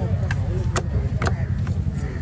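Heavy knife chopping through diamond trevally flesh and bone on a wooden chopping block: four sharp chops, roughly two a second, the middle two loudest.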